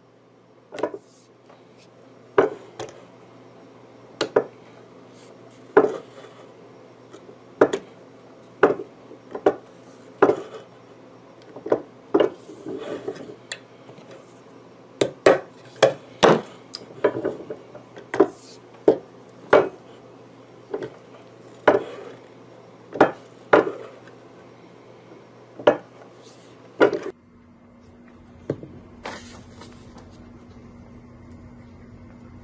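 Arbor press with a fret caul seating fret wire into a guitar fingerboard: a sharp knock each time the ram comes down, about one a second, with a low steady hum under it. Near the end the knocks stop and only a few faint clicks remain.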